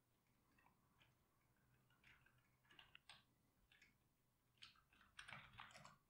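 Faint typing on a computer keyboard: scattered keystroke clicks in short runs, busier near the end.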